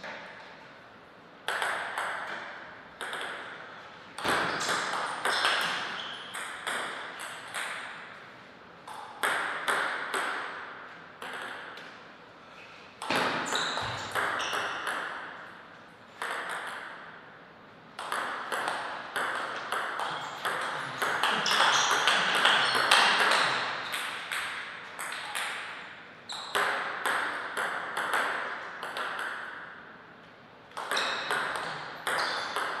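Table tennis rallies: the ball clicks off the rackets and the table in quick back-and-forth exchanges, each hit ringing briefly. Several points are played, with short pauses between them.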